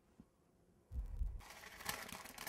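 A soft low thump about a second in, then parchment paper rustling and crinkling as it is handled and lifted.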